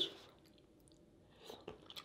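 Faint mouth sounds of chewing king crab meat: a few soft, short wet clicks and smacks in the second half.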